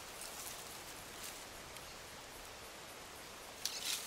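Hands digging and rummaging in loose soil around a clump of tubers: faint rustling over a steady outdoor hiss, with a brief louder scratchy rustle near the end.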